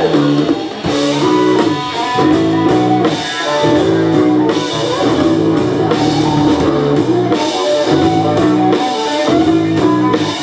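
Live band playing an instrumental passage on drum kit and string instruments, with plucked string notes over a steady beat.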